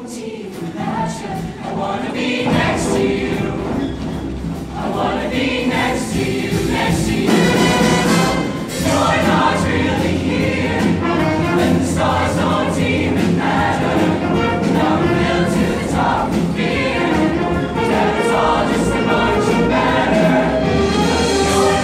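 Show choir singing in full voice over a live band, with a steady bass line under the voices; the music swells about two seconds in and stays loud.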